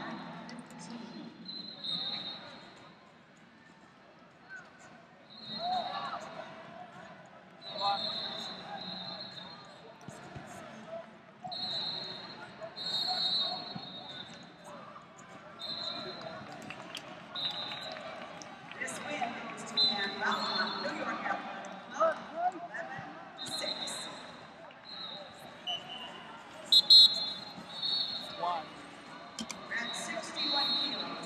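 Wrestling tournament hall: referees' whistles give short, high blasts every second or two, some in quick pairs. Voices of coaches and spectators carry on underneath.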